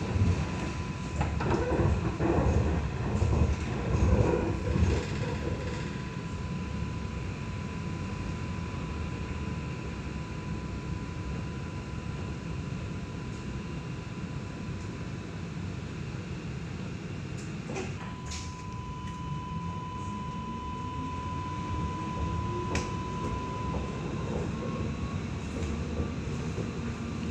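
Interior running noise of an Alstom Citadis X05 light rail tram pulling away from a stop and riding along street track: a steady low rumble with a thin steady high tone over it, and a few knocks in the first seconds. Near the end a motor whine rises steadily in pitch as the tram accelerates.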